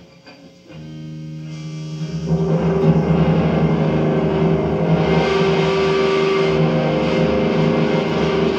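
Stratocaster-style electric guitar played solo: a chord rings out about a second in, then louder strummed chords ring on steadily from about two seconds in.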